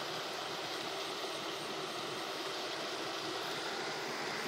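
Steady, even background noise with no distinct events.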